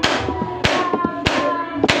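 Hand claps keeping a steady beat, one sharp clap roughly every 0.6 seconds, over a group of women singing softly.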